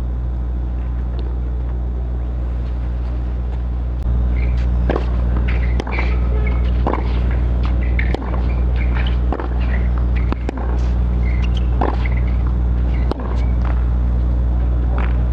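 Tennis ball struck back and forth in a clay-court rally: about eight sharp hits, roughly a second apart, over a steady low hum.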